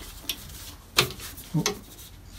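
A sharp metallic click about a second in, with a fainter tick before it, from the spring-loaded lever lock on a wood lathe's cast-metal tool-rest banjo as it is worked by hand.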